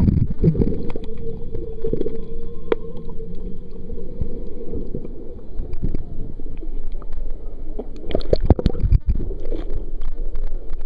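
Water sloshing and churning around a camera held underwater and at the surface, heard muffled and low. A cluster of sharp splashes comes about eight seconds in as it breaks the surface.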